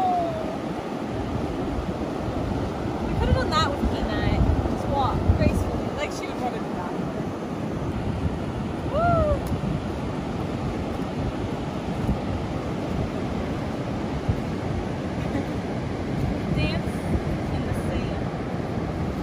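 Ocean surf breaking on a sandy beach, a steady rush of waves, with strong wind buffeting the microphone.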